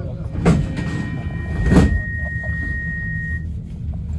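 Inside a C25 metro train car: a steady low rumble with two sharp thumps about a second apart and a steady high tone lasting a few seconds. These fit the sliding doors shutting while the train stands at a station.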